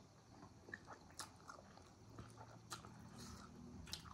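Faint eating sounds: people chewing momos and spicy ramen noodles, with a handful of soft mouth clicks and smacks scattered through.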